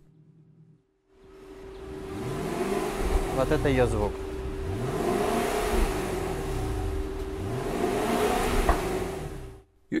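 Infiniti FX50S's stock V8 exhaust, without the active sound system, revved several times from idle, the pitch rising and falling with each rev. It starts about a second in and stops just before the end.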